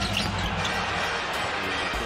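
Arena crowd noise at a basketball game, with a ball bouncing on the hardwood court as it is dribbled up the floor on a fast break.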